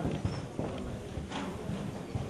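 Footsteps and shuffling of people moving about on a hard floor: a run of irregular soft knocks and thuds, with a couple of sharper clicks about a second and a half in.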